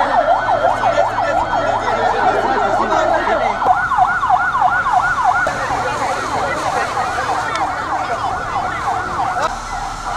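Emergency vehicle siren on a fast yelp, its pitch rising and falling about three times a second, loud and unbroken; it stops shortly before the end.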